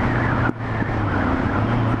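Motorcycle engine running steadily at freeway speed under a broad rush of wind and road noise. The level drops briefly about half a second in.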